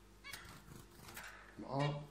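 Fingers crumbling and mixing soft food on a ceramic plate: a few faint clicks and scratches, then a man's voice begins near the end.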